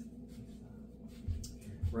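Hands kneading bread dough on a floured countertop: soft rubbing and pressing, with two dull thumps near the end as the dough is pushed down.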